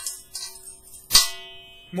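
A metal teaspoon clinking against a stainless steel mixing bowl: a light tap at the start and a sharper clink about a second in, each followed by a clear metallic ringing that fades.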